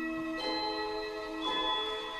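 Symphony orchestra playing a slow movement: sustained, ringing, bell-like struck tones, with new strokes about half a second and a second and a half in.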